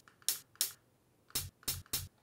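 Hi-hat slices cut from a sampled drum break, triggered one at a time from the pads of PreSonus Impact: six short hits in two quick groups of three. The first three are thin, their low end cut by a 24 dB high-pass filter. The last three, from an unfiltered hat slice, carry a low thud of kick bleeding into the sample.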